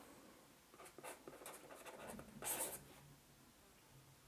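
Faint pen strokes scratching on paper: several short strokes, then a louder, longer one about two and a half seconds in.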